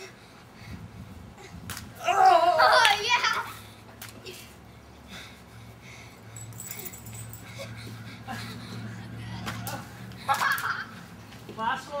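A loud shouting voice about two seconds in, lasting more than a second, and shorter calls near the end, over a faint steady low hum.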